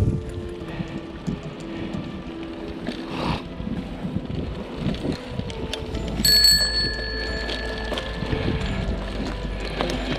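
A handlebar-mounted bicycle bell is struck once a little after six seconds in, and its high tone rings on and fades over two to three seconds. Underneath is the bumping and rattling of a mountain bike riding a rough grass trail.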